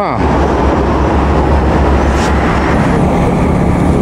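Highway traffic with heavy vehicles: a loud, steady low engine rumble from trucks and buses on the road.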